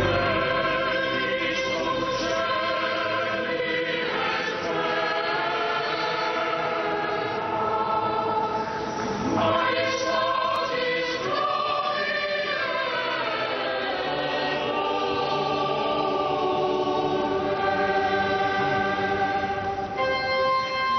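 Choir singing sacred music, several voices holding long notes at once.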